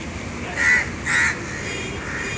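A crow cawing twice, two short, loud, harsh calls about half a second apart.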